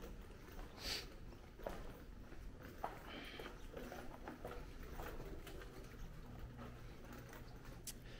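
Faint footsteps and scattered light ticks of someone walking, over a quiet low room hum.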